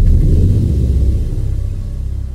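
Deep, loud cinematic rumble from a logo-reveal sound effect, the tail of a heavy boom, slowly fading.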